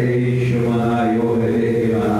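A man's voice, amplified through a handheld microphone, holding one long steady chanted note.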